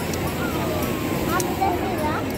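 Amusement ride in motion: a steady rumble of the ride and wind blowing over the phone's microphone, with voices of riders and onlookers calling out over it, including a long falling call and a couple of short high squeals near the end.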